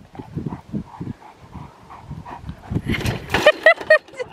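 A large white dog running about on grass: irregular dull thumps, then a few short high-pitched whines about three seconds in.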